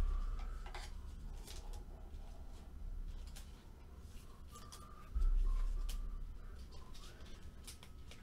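Trading cards being handled and slid into thin plastic penny sleeves: light plastic rustles and scattered clicks, with a low thud about five seconds in.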